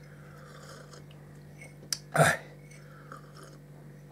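A man sipping tea from a mug: a soft slurp in the first second or so, then a short hesitant "eh" about two seconds in, over a steady low hum.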